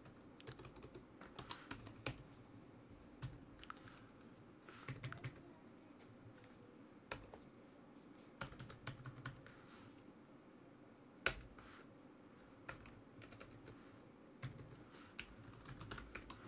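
Quiet typing on a computer keyboard: short bursts of keystrokes separated by pauses, with one louder click about eleven seconds in.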